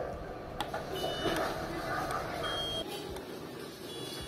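CodeWiz board's onboard buzzer giving short high electronic beeps as its touch pads are touched: two brief notes of different pitch, about a second and a half apart.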